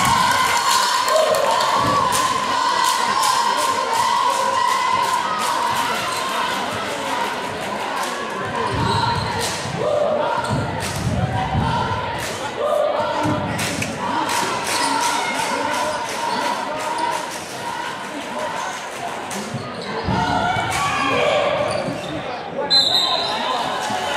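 A basketball bouncing and being dribbled on a hardwood gym floor, with players' and spectators' voices echoing in the gym. Near the end comes a short, sharp whistle blast.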